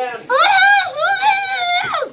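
A child's high-pitched voice making two long, wavering sounds with no clear words.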